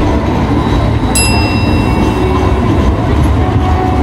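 Sydney light rail tram passing close by: the steady low rumble of the tram running on its street rails. A brief high ringing tone sounds about a second in and fades.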